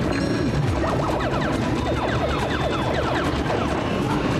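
Space Invaders arcade game with mounted cannon controls being fired: a rapid string of short falling zaps from the shots, over the game's music.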